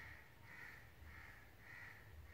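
Faint bird calls: four harsh notes about two-thirds of a second apart, over a low hum, with a light click at the very start.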